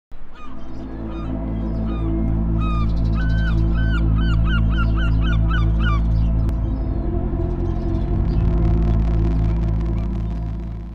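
A run of squawking seabird calls, quickening into a fast series of about ten calls, then stopping about six seconds in. Under them runs a steady low electronic drone with a bass pulse about four times a second, which swells once the calls stop.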